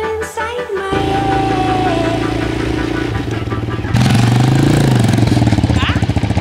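Music for about the first second, then a small motorcycle engine running with an even pulse. About four seconds in it gets louder and revs up and back down.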